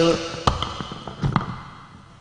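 Three sharp wooden knocks: one about half a second in, then a quick pair about a second and a quarter in. They are typical of a wayang golek dalang striking the wooden puppet chest (kotak) with a cempala knocker to punctuate a puppet's movement.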